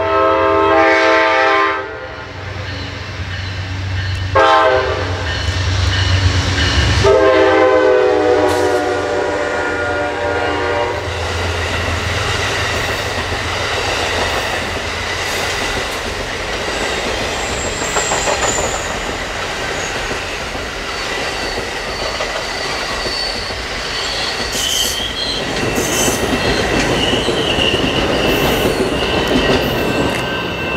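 Amtrak Coast Starlight's diesel locomotive sounding its horn as it approaches: a long blast ending about two seconds in, a short one, then a long one lasting about four seconds, the close of a long-long-short-long grade-crossing signal, over the locomotive's engine rumble. The passenger cars then run past with steady wheel rumble, clatter and intermittent high wheel squeals.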